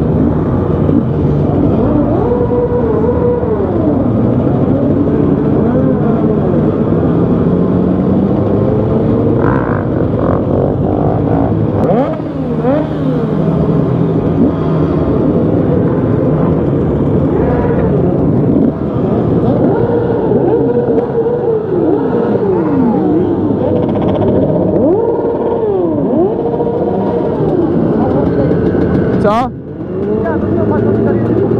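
Several motorcycle engines revving up and down over and over, their pitch rising and falling in overlapping sweeps over a steady low rumble. The nearest is the rider's own dirt bike, with others riding alongside. The sound breaks off briefly near the end.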